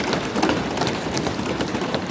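Many members thumping their wooden desks in applause, the Lok Sabha's customary approval: a dense, steady clatter of rapid knocks.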